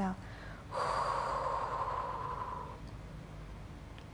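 A woman's long breathy exhale through the mouth, lasting about two seconds and fading out, as she breathes out on the effort of curling her chest up in a Pilates chest lift.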